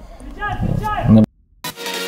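A man's voice speaks briefly and is cut off. After a moment of dead silence, electronic dance music starts a little past the middle.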